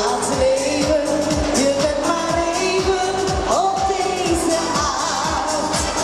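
A woman singing a schlager pop song live into a microphone over amplified dance-pop backing, with a steady kick drum beating about twice a second.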